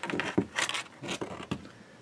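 Handling noise from a large cylindrical high-voltage capacitor being turned and stood upright on a workbench: a sharp click at the start, then a few brief scrapes and rubs.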